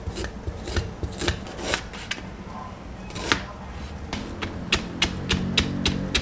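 Fresh ginger root being scraped with a spoon to peel it: a series of uneven rasping scrapes. From about four and a half seconds a kitchen knife cuts through the ginger onto a plastic cutting board in a quick, regular run of strikes.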